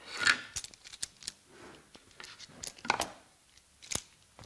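Handling clatter of a small metal clamp being picked up off the bench and brought to a wooden jig and workpiece: a short scraping rattle at the start, then scattered light clinks and knocks, with a sharper knock about three seconds in.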